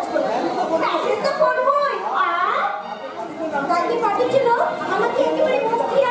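Speech only: actors' voices delivering stage dialogue, more than one voice, with a brief lull about halfway through.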